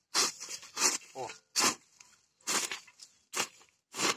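Hoe (enxada) blade scraping over the soil, cutting weeds at the surface with the blade kept on the ground: about six short scraping strokes, one roughly every second.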